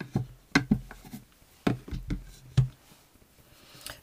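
A board being set down and shifted on a work top: a handful of short knocks and bumps over the first three seconds.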